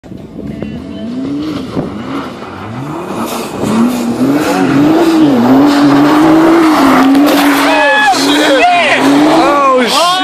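Nissan GT-R's engine revving hard while drifting on snow, the revs rising and falling with the throttle and getting louder as the car passes close, over the hiss of spinning tyres throwing up snow. In the last couple of seconds the revs swing up and down quickly.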